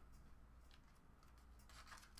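Near silence, with a few faint rubs and scrapes of trading cards being handled. The clearest comes near the end.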